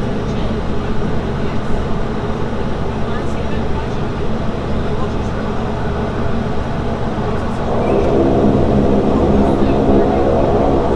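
Saab 340B's General Electric CT7 turboprop engine and propeller droning steadily at taxi power, heard from inside the cabin beside the wing. About eight seconds in, the drone grows louder and fuller as power comes up.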